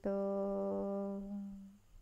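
Buddhist chanting in Pali: the chanting voice holds one long final syllable on a steady pitch, fading away near the end.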